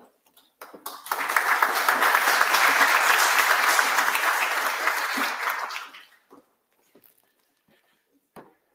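Audience applauding, rising about a second in and dying away by about six seconds.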